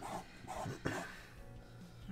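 A few short, soft scraping strokes of a plastic tool dragging chalk paste across a mesh stencil, then quieter handling as the paste is wiped back into the jar.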